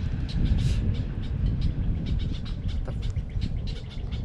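Small birds chirping in quick, repeated short notes over a steady low rumble.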